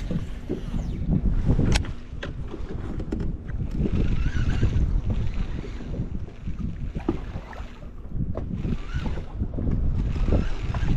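Wind buffeting the microphone in gusts, over choppy lake water slapping against a boat's hull, with a few sharp clicks.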